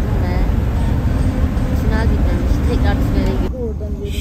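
Steady low road and engine rumble inside a moving Mercedes minibus in a road tunnel, with faint voices over it. About three and a half seconds in, the higher hiss drops away suddenly and the low rumble carries on.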